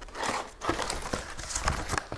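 A corrugated cardboard sleeve being pulled open and slid off a potted plant: irregular rustling and scraping of cardboard with a few light knocks.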